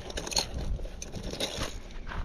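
Rustling and small scattered clicks of hands rummaging through a fabric waist bag of fishing lures, over a low steady rumble.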